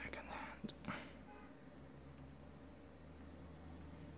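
Quiet room tone with a steady low hum. In the first second there is the end of a spoken word and a soft, breathy whisper-like sound.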